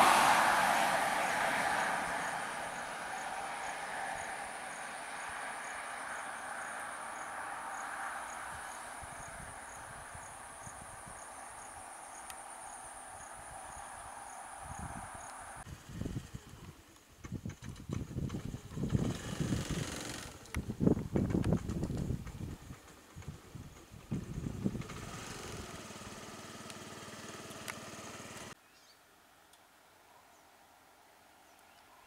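Road traffic: a motor vehicle passes close and fades away over the first few seconds, over a steady high insect drone with a regular ticking chirp about two or three times a second. After a sudden change about halfway, uneven bursts of low rumbling rise and fall, loudest in the third quarter.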